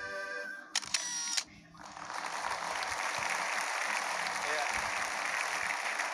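Background music stops a little under a second in, followed by a short transition sting. From about two seconds in, a studio audience applauds steadily.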